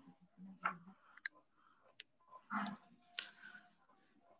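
A few faint sharp clicks: two in quick succession just over a second in, and one more at two seconds, with faint low voice sounds between them.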